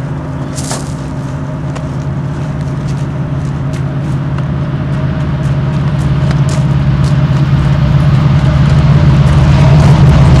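A heavy engine's low rumble with a thin steady whine above it, growing steadily louder, with a few faint ticks.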